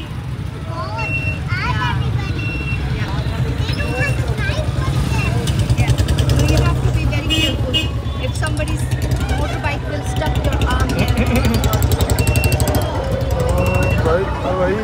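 Ride in an open auto-rickshaw through busy street traffic: a steady low rumble of the moving vehicle and passing motorbikes, with repeated short high beeps and voices from the street.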